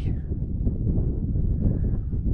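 Wind buffeting the microphone: a steady, gusty low rumble.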